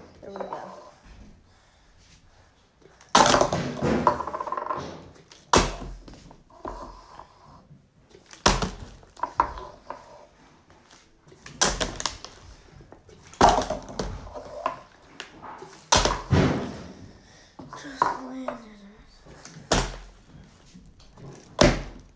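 A part-filled plastic water bottle flipped over and over, thudding down on a wooden table and knocking against a plastic cup: about eight sharp impacts a few seconds apart, each followed by a brief clatter.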